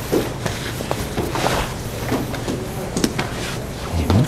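Room sound of a martial-arts class practising together: scattered light knocks and shuffles from people moving on the mats, with faint murmured voices, over a steady low hum.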